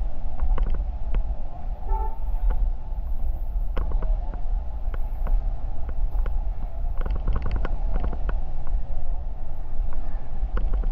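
Wind buffeting the microphone over the running noise of a motor scooter being ridden along a street. There is a brief horn toot about two seconds in, and scattered light ticks throughout.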